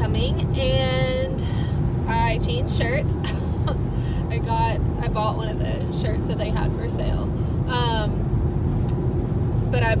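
Steady low road and engine noise inside a moving car's cabin, under a woman talking.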